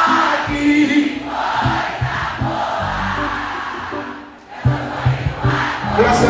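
Large concert crowd singing along with a live band: many voices blend into one dense sound over pitched bass notes and a beat. The sound dips briefly a little past four seconds, then picks up again.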